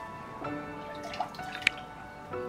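Background music of held notes that change about once a second, over liquid ceramic glaze being stirred in a plastic bucket: wet sloshing and dripping, with a sharp click near the end.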